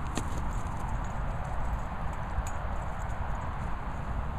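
Low rumbling handling noise from a handheld camera swung close over grass, with a couple of faint clicks.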